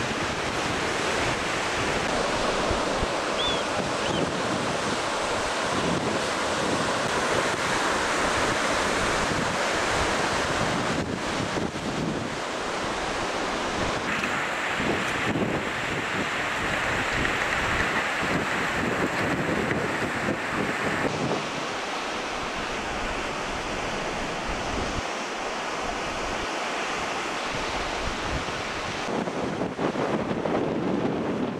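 Sea surf washing onto a rocky shore, mixed with wind buffeting the microphone: a steady rushing noise that shifts abruptly a few times.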